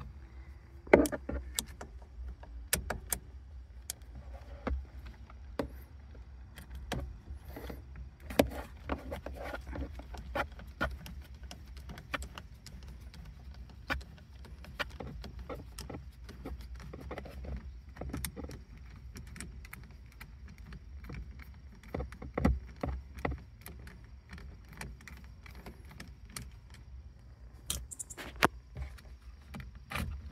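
Irregular small clicks, ticks and clatter of a screwdriver and fingers working at the hard plastic housings and connectors of a 2007 Honda Fit's steering column, pushing a part down to free it, over a steady low rumble. The louder knocks come about a second in and again around two-thirds of the way through.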